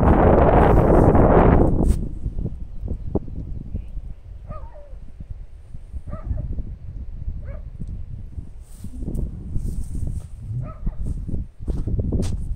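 A dog barking, about four short barks a second or more apart. Wind buffets the microphone loudly for the first two seconds, then drops away.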